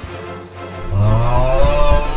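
A long, low moo-like call starts about a second in and holds, over background music.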